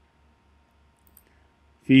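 Near silence with one faint computer-mouse click about a second in, then a man's voice starts just before the end.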